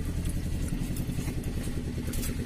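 A small engine idling steadily, a low drone with rapid even pulses, with light clatter over it.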